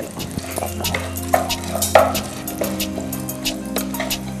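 Background music with long held notes, over a wooden spatula stirring lentils and red chillies in oil in a pot, with light scattered knocks and clinks.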